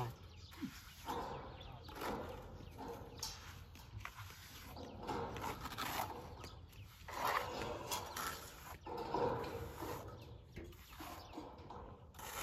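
Steel trowel scraping and smoothing wet cement render on a concrete footing, in repeated irregular strokes.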